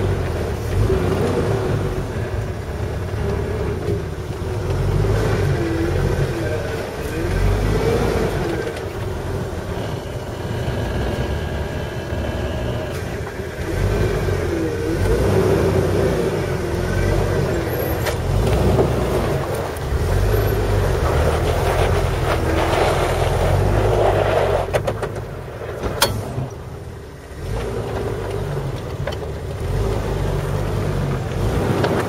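Jeep engine running at low speed as the Jeep crawls over a dirt trench, its low rumble rising and falling with the throttle. There is one sharp knock near the end, just before the engine briefly drops away.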